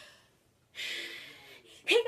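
A girl's loud breath, a gasp about a second long that starts sharply and fades, followed right at the end by the start of a spoken "Hey".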